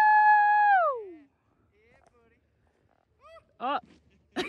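A person's long, high vocal shout, held for about a second and then sliding down in pitch. Near the end come two short yelps that rise and fall.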